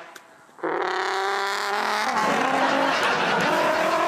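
A car on the road, engine and tyres sounding together, coming in suddenly about half a second in and running loud and steady, its pitch sagging a little partway through.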